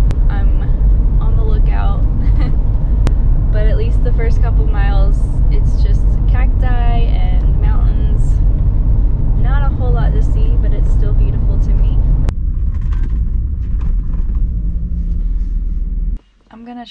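Steady low rumble of road and engine noise inside a Ford Transit camper van's cab while it drives along a paved road. About twelve seconds in, the sound changes abruptly, losing its higher sounds while the rumble goes on.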